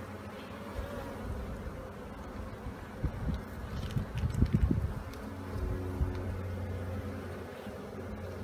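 Honeybees buzzing around an open hive, with a steadier buzz in the second half. A cluster of low knocks and handling noises around the middle is the loudest part.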